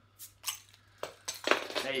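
A keyring bottle opener levering the metal crown cap off a glass beer bottle: a few short metallic clicks as the cap is pried loose.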